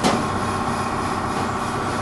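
Steady mechanical hum and hiss of machinery running in the background of a workshop, with a short click right at the start.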